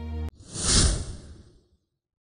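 Background music cuts off abruptly, then a whoosh sound effect swells and fades over about a second, marking a transition.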